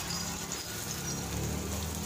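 Chopped onions sizzling faintly in hot oil in a pan, stirred with a wooden spatula.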